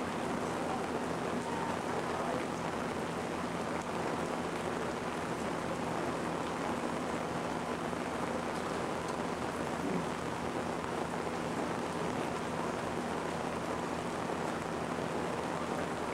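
Steady heavy rain, an even hiss that does not let up, with a low steady electrical hum beneath it.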